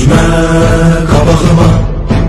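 Background music between sung lines of a song: a long held, chant-like note, breaking off about a second in and resuming, over low drums.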